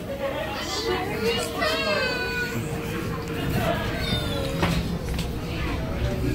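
Young children's high-pitched voices chattering, over a steady tone that cuts off with a click about three-quarters of the way through.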